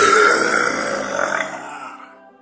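A man's loud, raspy roar, a single long throaty bellow imitating the MGM lion's roar. It starts suddenly, holds for nearly two seconds, then fades.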